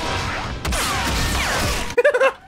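Cartoon fight sound effects: a run of falling whistling zings like bullet ricochets over a low rumble, with a sharp hit a little after half a second in. They sound like Yosemite Sam shooting a gun.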